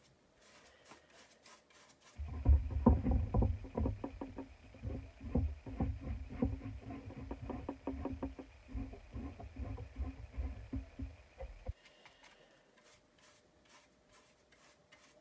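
A paintbrush working paint onto a flower pot in quick, scratchy strokes, with low rumbling knocks as the pot is held and turned on the table. It starts about two seconds in and stops shortly before the end.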